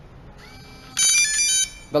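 Electronic keypad locker lock playing a short melody of several electronic beep notes about a second in, lasting under a second. It signals that the user code was accepted and the latch is drawing in to unlock.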